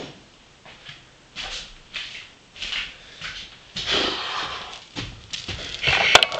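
A person huffing and breathing out heavily in a run of short, noisy breaths, about one every half second to second, loudest around the middle.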